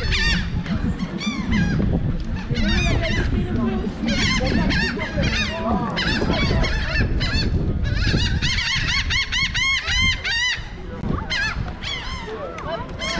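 A flock of seagulls calling as they circle overhead: many short, arched calls overlapping one another, busiest in the last third.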